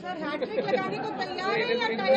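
Speech only: several voices talking over one another.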